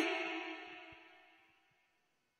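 The final held note of a solo unaccompanied chanted voice, as in Quran recitation, dies away in reverberation over about a second, leaving near silence.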